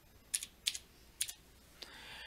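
A few keystrokes on a computer keyboard, sharp separate clicks spread over about a second, typing the year of a date.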